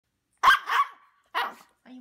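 Maltese dog giving short, high-pitched barks: a quick double bark about half a second in, then a single bark about a second later.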